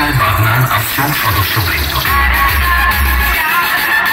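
Loud EDM dance music played through a roadshow DJ sound system, with heavy bass notes that drop out near the end.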